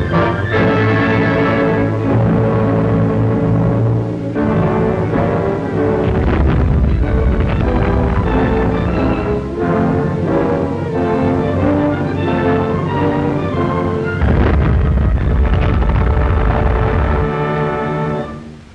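Dramatic orchestral film score with timpani and strings, playing loud and unbroken. A deep low rumble swells in twice, about six seconds in and again near the end.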